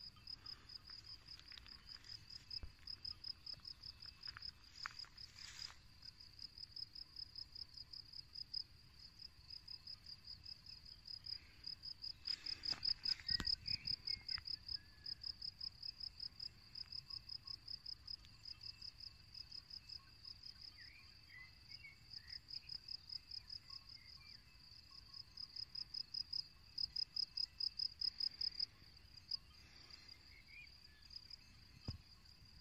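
Crickets chirping in a fast, steady, high-pitched pulse, about four chirps a second, louder around the middle and again near the end.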